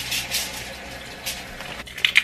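Steady hiss of running water as broccoli florets are rinsed.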